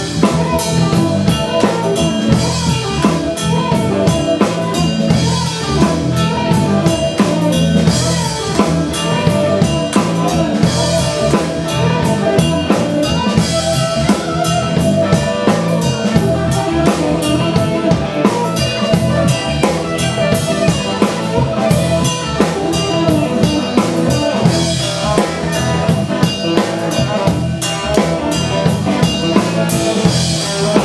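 Live band playing an instrumental passage: a drum kit keeps a steady beat under electric guitars and keyboards, with no vocals.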